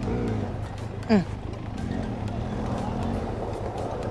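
Benelli TRK 502's parallel-twin engine running at low revs as the motorcycle rolls slowly away from a stop, a steady low hum.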